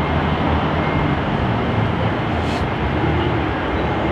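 City street traffic noise: a steady rumble of passing vehicle engines and tyres, with one brief high-pitched sound about two and a half seconds in.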